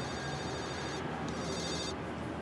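Mobile phone ringing: a high-pitched electronic ringtone that breaks off briefly about a second in and starts again.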